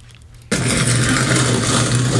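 Shopping cart rolling down a supermarket aisle, a steady rumble and rattle that cuts in abruptly about half a second in.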